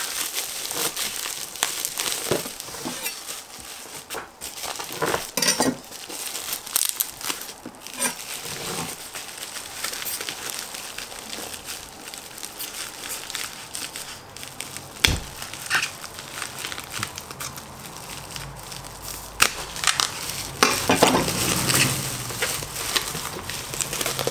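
Plastic bubble wrap crinkling and crackling as it is handled and pulled off a boxed part, in irregular bouts, with a single dull thump about halfway through.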